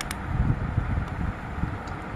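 A plastic dual-tip marker being handled close to the microphone: a steady low rumble of handling noise, with a light click just after the start and another near the end.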